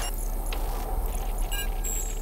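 Electronic sound design for a glitching title animation: a steady low rumble under a rushing wash of noise, with short digital glitch blips and beeps in the second half.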